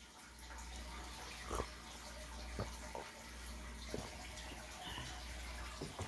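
Quiet room background: a faint steady hiss with a handful of soft taps.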